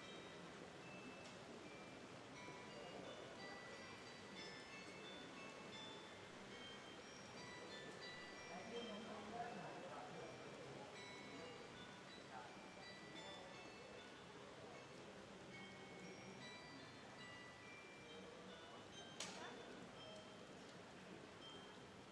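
Carillon bells playing a folk tune, heard faintly as many short ringing notes, struck from the tower's baton keyboard. A single sharp knock sounds about 19 seconds in.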